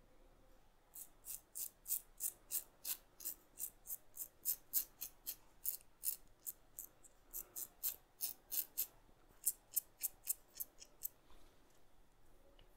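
Romer 7 S1 hybrid-head safety razor with a Bic Chrome Platinum blade, on its mild close comb side, scraping through lathered stubble in short, quick strokes, about three or four a second, with brief pauses. Each stroke makes a faint rasp of the blade cutting whiskers.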